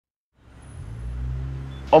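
After a brief silence, a steady low rumble fades in about half a second in. A man's voice starts just at the end.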